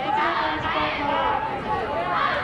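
Several voices shouting and calling at once over a background of crowd chatter, the loudest swell about half a second in.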